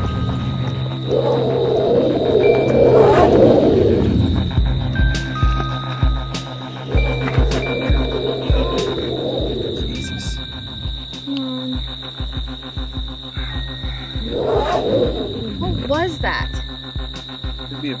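Horror score with a steady drone and pulsing low beats under a creature's loud cries: several bursts through the stretch, then rising squeals near the end. The cries are likened to a pig's, though unlike any pig that has been heard.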